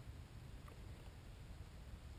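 Near silence: a faint, steady low rumble with light hiss, with no clear engine note.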